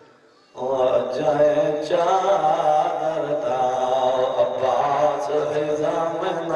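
A man's voice through a microphone chanting a religious recitation in long held, wavering notes. It starts about half a second in, after a brief hush.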